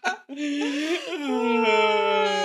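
A voice howling one long, drawn-out wail. It starts about a quarter second in, and its pitch wavers before settling lower and holding steady.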